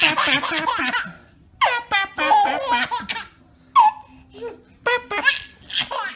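Baby laughing in repeated short bursts, a long run of giggles at first, then separate laughs with pauses between them.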